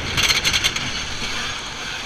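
Wooden roller coaster train clattering along its track, a quick rattling run of clicks in the first second that then eases into a steady rumble.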